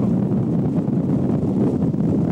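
Wind buffeting the camcorder microphone in a steady low rumble, as from moving across open ground in an open vehicle.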